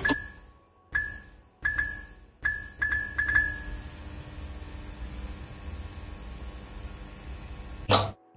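Sound effects of a neon sign being switched on: a sharp switch click, then a run of sharp electric clicks, each with a short ringing ping, as the tubes flicker on. It settles into a steady electrical hum, and a last loud click comes near the end as the sign goes dark.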